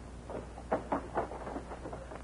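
A quick run of sharp clacks, the loudest three close together about a second in, over a steady low hum.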